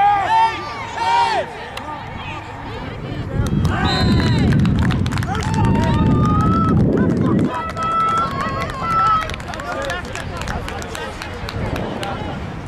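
Spectators shouting and cheering at a youth football play: sharp high-pitched yells right at the start, then a louder swell of crowd noise and shouting a few seconds in that eases off toward the end.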